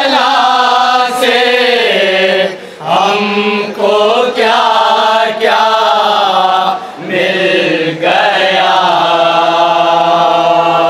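Men's voices chanting a nauha, a Shia mourning elegy in Urdu, without instruments: a lead reciter with a chorus of men joining in. The phrases are long and drawn out, with short breaks between them.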